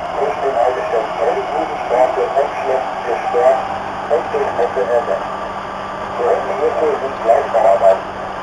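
Indistinct voices of people talking, over the steady low hum of a DT3-E U-Bahn train running along the line.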